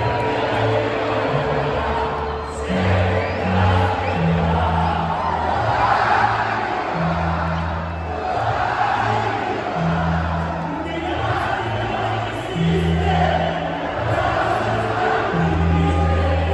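Music over an arena sound system, with held bass notes changing about once a second, under the constant noise of a large crowd shouting and cheering.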